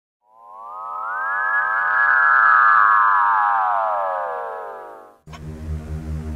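Electronic synthesizer sweep: several layered tones glide up, then slowly down, swelling in and fading out over about five seconds. A low synth bass drone cuts in near the end.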